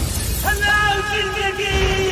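Glass shattering at the very start, then one long held note, gently wavering, over music, from about half a second in.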